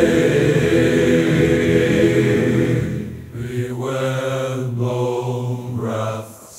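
Closing bars of an AI-generated folk song: a long, chant-like sung note held over the music, which dips about three seconds in before another lower held note follows.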